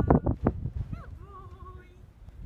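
Footsteps on wooden pier planking: several quick steps in the first half second, then fainter ones. A faint wavering tone comes in during the second half.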